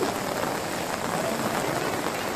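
Heavy monsoon rain falling as a steady hiss, with floodwater running fast over the ground.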